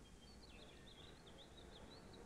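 Near silence with a faint run of quick, high bird chirps in the background.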